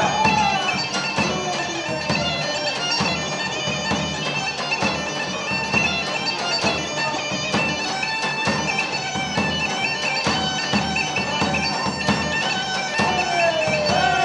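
Live Greek folk dance music: a bagpipe plays a wavering melody over steady drone tones, with a large drum beating the dance rhythm.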